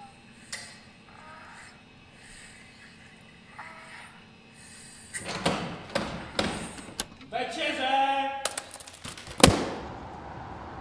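Faint sounds, then a run of sharp knocks and clatter from about halfway, a short voice-like cry about three quarters in, and one loud thud near the end.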